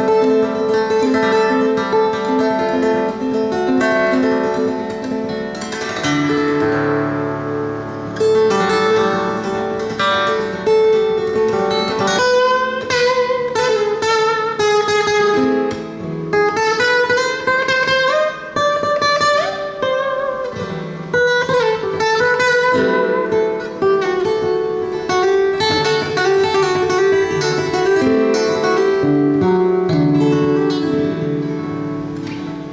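Solo custom acoustic guitar from Borghino Guitars, with extra strings strung diagonally across the body, played fingerstyle. Picked melody notes ring over sustained bass notes, with sliding notes in the middle.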